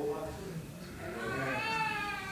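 A high-pitched, drawn-out vocal cry, most likely a young child's, rises and then falls in one arch lasting about a second and a half. It starts about a second in, after a little of a man's speaking voice.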